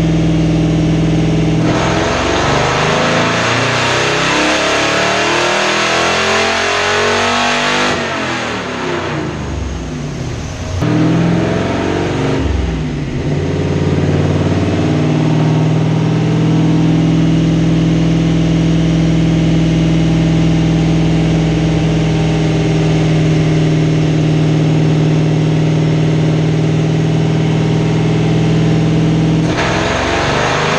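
1933 Ford hot rod's engine on a chassis dynamometer. It holds steady, then climbs in pitch for about six seconds through a dyno pull, drops away sharply when the pull ends and winds down, and settles into a steady, even run for the last half.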